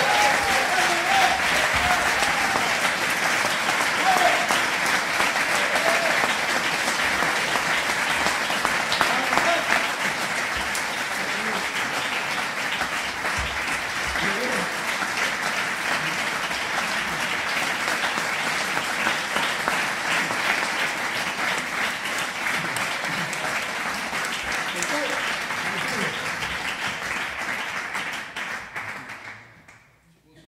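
Audience applauding steadily, with a few voices calling out in the first seconds. The applause fades out over the last two seconds.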